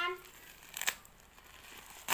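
Plastic parcel wrapping being handled by a child's hands, faintly rustling, with a short sharp crackle just under a second in.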